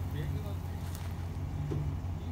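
Pickup truck engine running at a low idle, a steady low rumble, with faint voices in the background.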